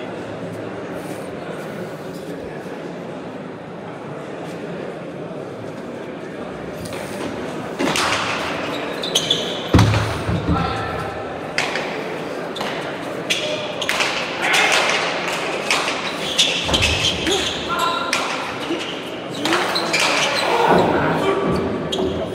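Murmuring crowd in an echoing hall, then from about eight seconds in a hand-pelota rally: a run of sharp smacks as the ball is struck bare-handed and hits the walls, each ringing in the court, with voices rising between the hits.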